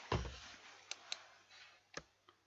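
A few sharp, isolated clicks of a computer keyboard, spaced out rather than typed in a run, with a soft low sound just after the start.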